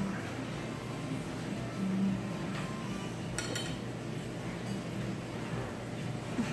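Steady low background hum with a brief ringing clink of tableware, dishes or glass, about three and a half seconds in.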